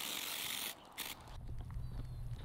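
Small hand pump sprayer spraying water onto a hand: a steady hiss that stops under a second in, then one short spurt. A vehicle's low engine and tyre rumble on a dirt road follows.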